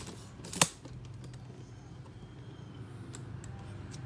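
A sharp click about half a second in, after a softer one at the very start, then a steady low hum with a few faint ticks.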